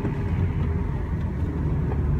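Steady low rumble of engine and road noise inside the cabin of a moving Toyota Corolla 1.33, from its naturally aspirated four-cylinder petrol engine and tyres. The cabin's sound insulation is rated by the reviewer as the car's weakest point.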